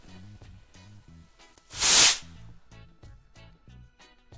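Background music with repeating notes, broken about two seconds in by a loud, rushing hiss lasting about half a second: a homemade potassium nitrate rocket motor firing as the rocket launches.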